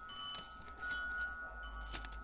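Light crinkling and crackling of a thin clear plastic sheet of nail art stickers being handled.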